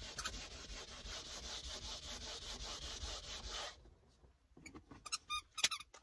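A scrub pad rubbing quickly back and forth over a dirty leather car door panel, several squeaky strokes a second, scrubbing the dirt off. The rubbing stops about four seconds in, then a few short strokes follow near the end.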